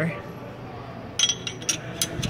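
Light metallic clinks of a steel clutch-gauge tool knocking against the clutch housing and release parts inside the inspection opening. Quiet at first, then a quick run of several sharp clicks from a little past the middle.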